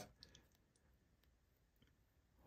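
Near silence, with a few faint clicks of a trading card in a clear plastic sleeve being handled, a couple early and one near the end.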